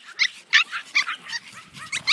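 Pomeranian puppy yipping: a quick series of short, high-pitched yips, about six in two seconds.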